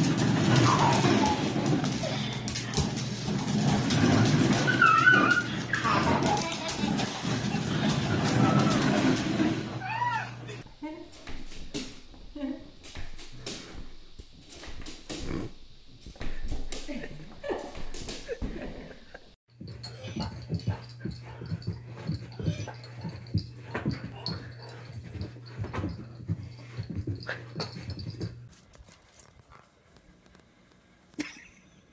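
A dog's vocal sounds mixed with people's voices, loudest in the first ten seconds. Then come quieter stretches of short knocks and clatter.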